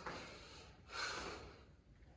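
A man breathing out hard once, about a second in, a forceful, pitchless exhale from the effort of a fast punching-and-jumping exercise.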